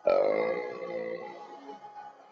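A sudden, loud, low vocal sound from a person that fades away over about a second, over the slot game's background music.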